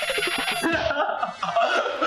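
A young man laughing hard, in short uneven bursts.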